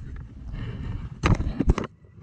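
Gloved hand working through a plug of dug soil: rubbing and crumbling noise close to the microphone, with two sharp knocks in the second half.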